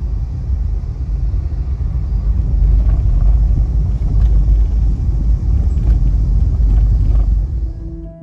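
Car driving along a narrow road, heard from inside the cabin: a loud, steady low rumble of road and tyre noise, with a few faint ticks, cutting off near the end.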